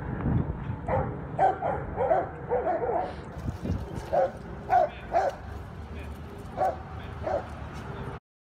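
Dogs barking in short, high yips: a quick run of them in the first three seconds, then single yips every half second to a second.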